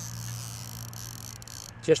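Fixed-spool fishing reel's drag buzzing as a hooked carp pulls line off the spool against fingertip pressure on the spool rim; the high, even buzz stops a little before the end.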